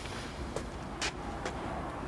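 Lit firework rocket fizzing and hissing as it burns, with three sharp crackles about half a second apart.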